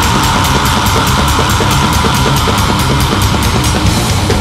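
Live drum kit playing along to a thrash metal song, with steady fast cymbal strokes about six a second over kick drum and distorted band sound.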